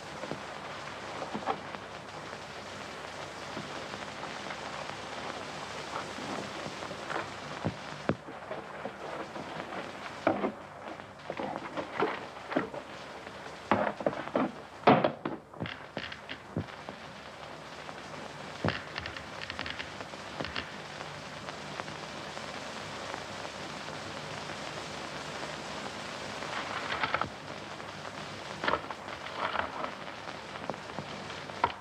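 A steady hiss with scattered sharp knocks and thuds, which come in a cluster about a third to halfway through and a few more near the end.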